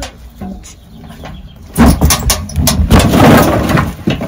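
A steel wheelbarrow loaded with split firewood rolls close by over wooden deck boards. Its wheel rumbles and the logs and metal tray knock and rattle, starting loudly about two seconds in.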